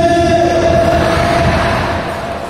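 A long, steady, horn-like tone held for about two seconds, fading near the end, over the low rumble of a stadium crowd.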